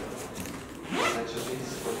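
A bag's zipper pulled in one quick stroke about a second in, rising in pitch as it goes.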